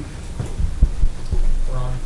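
A few dull, low thumps, typical of bumps on a desk microphone, then a short voiced hum just before the end.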